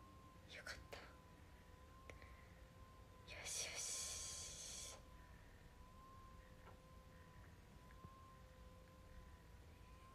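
Near silence with a faint steady hum, where a person gives one breathy exhale lasting about a second and a half, about three seconds in, and a couple of soft clicks come just before a second in.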